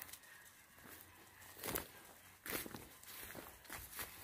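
Faint, uneven footsteps rustling through dry grass and hay. A few louder steps come in the second half.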